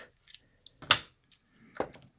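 Small 650 mAh 4S LiPo battery packs handled and stacked on a workbench: three light clicks and knocks of the packs and their plug leads against each other and the bench, the loudest about a second in.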